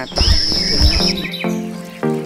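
Bird chirps over a low rumble and a steady high tone, then background music comes in about halfway through with evenly repeated pitched notes.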